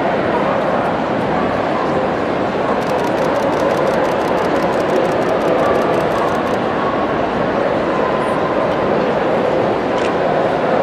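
Steady, dense din of a large dog-show hall: many dogs barking in the distance amid crowd chatter, with no single bark standing out.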